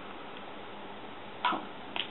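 Steady low hiss of room tone, broken by two short, sharp clicks: one about a second and a half in and one at the very end.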